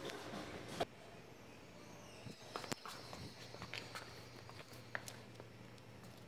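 Faint footsteps and light clicks and knocks on a hard floor, over a low steady hum.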